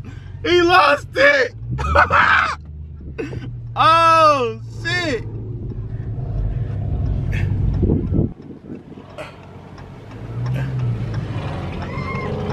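Voices calling out inside a car cabin over the car's low engine rumble, one call long and gliding. Then the steady low rumble alone, which drops away about eight seconds in and returns briefly near the end.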